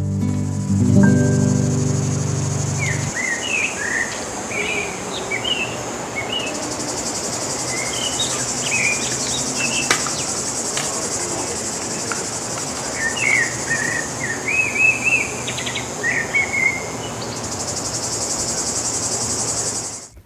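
Guitar music ends about three seconds in, leaving woodland ambience: a steady high chorus of insects, louder from about six seconds on, with scattered bird chirps over it.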